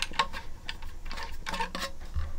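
Irregular light clicks and taps as a vinyl LP is handled and seated by hand on a plastic record-cleaning holder.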